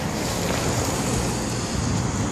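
Steady rushing, wind-like noise with a faint high whistle running through it.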